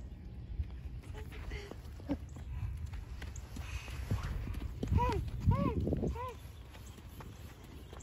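Low rumble of wind on the microphone in falling snow, with faint footsteps on snow. About five seconds in come three short vocal sounds from a child, each rising and falling in pitch.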